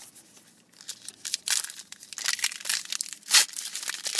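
Wrapper of a Topps 75th trading-card pack crinkling and tearing, with cards handled in the hands. It comes as a run of irregular crackles from about a second in, the loudest about three and a half seconds in.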